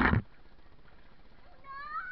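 A short loud splash of noise at the very start, then, near the end, a high-pitched cry that rises and then falls, typical of a child squealing while playing in a pool.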